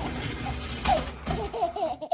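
Lego train running along plastic track, a steady mechanical whirring and rattling of its motor, gears and wheels, with someone laughing over it.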